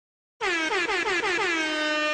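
DJ-style air horn sound effect used as an edit stinger: a quick run of short stuttering blasts starting about half a second in, then one long held blast.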